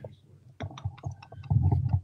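A man's deep laughter, low and rumbling, starts about three-quarters of a second in after a short quiet gap and grows louder near the end, with a few faint clicks before it.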